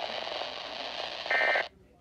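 Weather radio speaker giving a steady broadcast hiss after the voice message, then a short buzzy burst of digital code tones about one and a half seconds in. Right after the burst the radio's audio cuts off suddenly.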